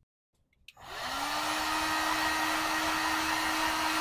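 Handheld heat gun switched on about a second in, its fan spinning up with a short rising hum and then blowing steadily. The hot air is being played over wet acrylic paint containing silicone to bring cells up in the pour.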